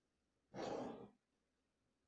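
A single short breath from the speaker, about half a second long and starting about half a second in.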